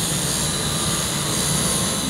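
Diesel engines of a Caterpillar tracked excavator and a Volvo dump truck running steadily while the excavator swings its loaded bucket over the truck bed, a low engine drone with a thin high whine on top.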